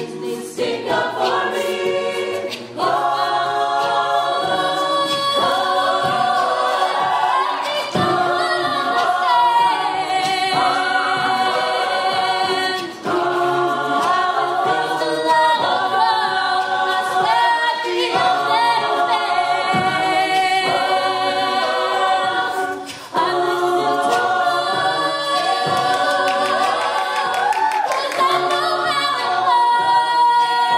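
Mixed-voice a cappella group singing a pop song, a female soloist leading over sustained backing harmonies, with two brief drops in the sound about thirteen and twenty-three seconds in.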